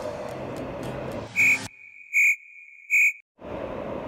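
Three short, high electronic beeps about three-quarters of a second apart, joined by a faint steady tone, over a sudden stretch of dead silence that suggests an edited-in sound effect. Before the beeps there is a moderate steady outdoor background.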